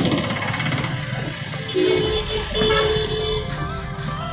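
Suzuki Gixxer 155's single-cylinder engine running at low speed in dense street traffic, with held tones from horns or music over the traffic noise.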